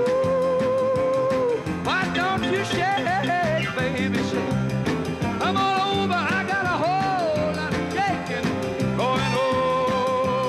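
Rock and roll band playing an instrumental passage over rolling piano, bass and a steady drum beat. A fiddle holds a long note with vibrato, then plays sliding, bending phrases, and settles back on a held note near the end.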